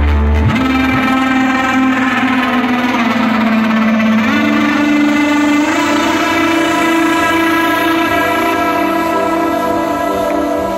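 Melodic techno played loud over a live sound system, heard from within the crowd. The heavy kick and bass cut out about half a second in, leaving a breakdown of sustained synth chords with a slow melody stepping upward.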